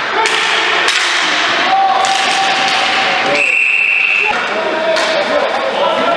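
Ball hockey game sounds in an arena: repeated sharp clacks of sticks and ball against the boards, with players' voices. A steady high tone sounds for about a second near the middle.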